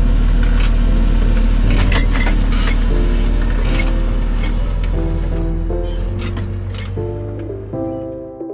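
Massey Ferguson 8470 tractor engine running steadily while pulling an 8-furrow plough, with scattered sharp clicks over the ploughing noise. Over the second half the tractor sound fades out as background piano music fades in.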